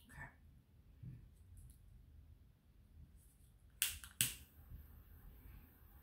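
A handheld lighter clicked twice, two sharp clicks about half a second apart a little past halfway, as it is struck to light a sage bundle.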